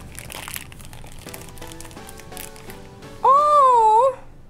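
Paper blind-bag wrapper being torn and crinkled open over quiet background music. Near the end comes a loud drawn-out vocal 'ooh' that rises and then falls in pitch.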